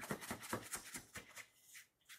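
Hands and a plastic bench scraper working soft dough on a wooden board: a quick run of faint scrapes and taps that thins out in the second half.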